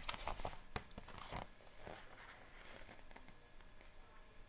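Paper rustling and crackling as a thin paperback picture book is turned and handled, busiest in the first second and a half, then a few fainter rustles.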